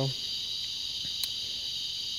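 Steady high-pitched chorus of cicadas buzzing.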